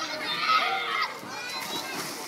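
Children's voices at a pool, a high child's voice calling out loudest about half a second in, then fainter voices.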